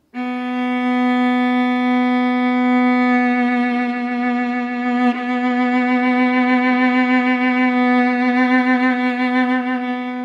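A single long bowed note on a string instrument, held straight at first and then played with vibrato whose direction wanders, first below the pitch and then above it, so the intonation sounds unstable and messy. There is a short break in the tone about five seconds in, and the wobble grows stronger in the second half.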